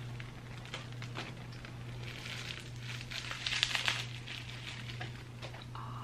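Bubble wrap crinkling and crackling as it is pulled off by hand, in scattered bursts that are busiest about three to four seconds in, over a steady low hum.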